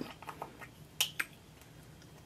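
Two sharp clicks of a small plastic cosmetics jar being handled, a fraction of a second apart, about a second in, with a few faint ticks before them.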